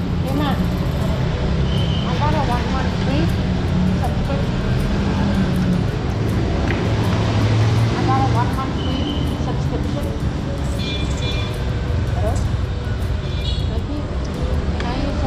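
Busy eating-house room noise: a steady low rumble under indistinct background voices, with occasional light clicks of cutlery on plates.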